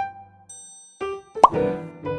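Light background music of short plucked and piano-like notes, with a cartoon 'pop' sound effect, a quick rising blip, about one and a half seconds in.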